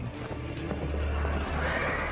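A horse neighing over a low, steady music drone.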